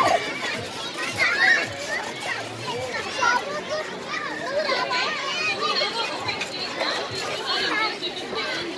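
Children playing on an inflatable bounce-house slide, their high-pitched voices shouting and chattering over one another throughout.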